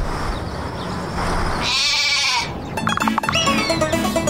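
A cartoon sheep's wavering bleat, about a second and a half long, followed near the end by light plucked-string cartoon music with a falling whistle-like glide.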